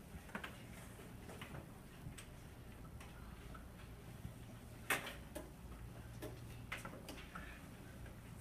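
Quiet classroom room tone: a steady low hum with scattered, irregular light clicks and taps from pupils handling pencils, paper and desks, and one sharper knock about five seconds in.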